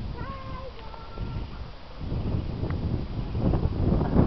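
Wind rumbling and buffeting on the microphone, in gusts that grow stronger in the second half. Two faint short pitched calls sound in the first second and a half.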